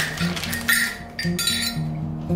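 Background music, with the crinkle of a plastic zip pouch being opened and light metallic clinks of small metal kerosene-lighter parts being handled.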